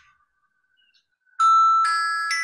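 A timer alarm goes off partway through: a loud, bell-like chime of ringing notes, a new note joining about every half second. It signals that the time for the drawing exercise is up.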